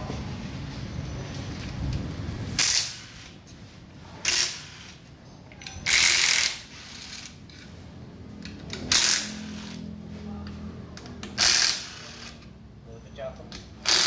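Cordless impact wrench loosening the CVT cover bolts on a Honda PCX 160 scooter: five short bursts of hammering a couple of seconds apart, with the tool's motor humming in between.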